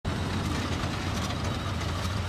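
Steady low hum of a Hyundai SUV's engine running.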